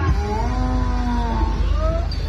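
A long drawn-out vocal cry, one sustained call that rises and then falls in pitch, over a deep low rumble.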